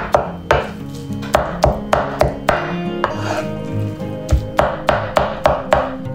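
Kitchen knife chopping raw chicken into mince on a wooden cutting board: a run of sharp knocks, about two to three a second, with a short pause around the middle.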